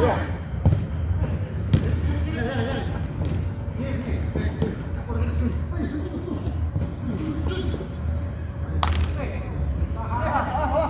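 A football kicked during a small-sided game on artificial turf: a few thuds, the sharpest near the end, over far-off shouts of players and a low rumble on the phone's microphone.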